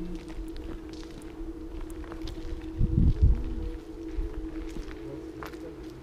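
Footsteps on concrete over a steady hum, with a loud low rumbling thump about three seconds in.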